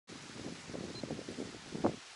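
Wind buffeting the microphone in uneven gusts, with rustling and a brief louder bump near the end.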